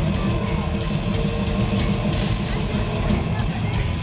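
Live metal band playing loud, recorded from the audience: distorted electric guitars and bass over drums keeping a steady beat.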